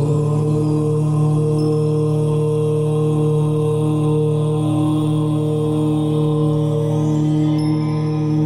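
A long "Om" chanted on one steady low pitch, held without a break, in a meditation music track.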